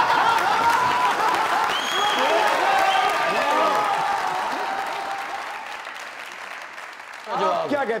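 Studio audience applauding, with voices cheering over the clapping; it dies away gradually over the second half, and a man starts speaking near the end.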